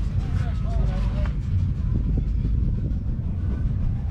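A 1969 Massey Ferguson 135's 2.5-litre three-cylinder diesel engine running steadily, with a deep, even low-pitched sound.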